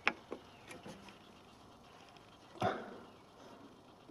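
Handling clicks from a Nakamichi BX-2 cassette deck's cassette door and mechanism: a sharp click at the start, a couple of lighter ticks, and a louder knock about two and a half seconds in.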